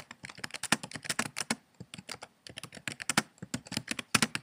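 Computer keyboard typing: a quick, uneven run of key clicks, with a brief lull about two seconds in.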